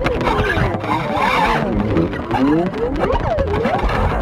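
Freely improvised electric guitar and bass music, dense with sliding, swooping notes that bend up and down, and a brief hissy noise about a second in.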